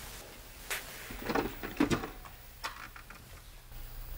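A few soft, scattered knocks and clicks of objects being handled, over low room noise.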